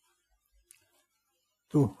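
Near silence with one faint click about two-thirds of a second in, then a man's voice starts speaking near the end.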